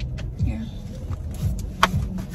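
Low, steady rumble inside a parked car, with a few soft thumps from handling and one sharp click near the end.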